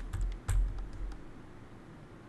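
A short run of computer keyboard keystrokes in the first second or so, the loudest about half a second in, each with a dull thud.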